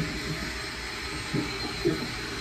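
Steady low rumble and hiss of background room noise, with two brief, faint vocal sounds in the second half.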